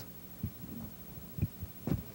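A quiet pause with a faint low hum and three soft, short low thumps: one about half a second in, one about a second and a half in, and one just before the end.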